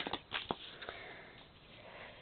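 Paper planner pages rustling and tapping as they are handled and pressed flat in a disc-bound planner: a few short sounds in the first half second, then quieter handling.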